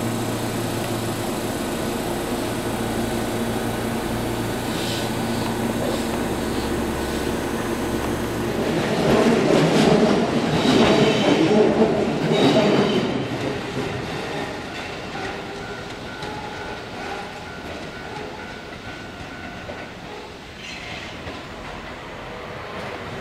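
Keihan electric commuter trains: first a steady motor and running hum from a train at close range. About nine seconds in comes a loud clatter of wheels over rail joints lasting about four seconds. It then fades to a quieter rumble as a train comes slowly around the curve.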